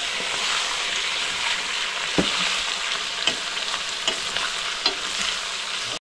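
Raw chicken pieces sizzling in hot oil in a metal wok, stirred with a steel ladle that knocks against the pan a few times: the start of frying the meat for a chicken curry.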